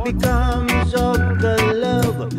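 Roots reggae music with a heavy, deep bass line, sharp regular beats, and a wavering melody line over it.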